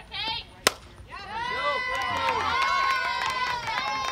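A single sharp crack of a fastpitch softball bat hitting the ball, followed about half a second later by many high-pitched voices cheering and shouting at once.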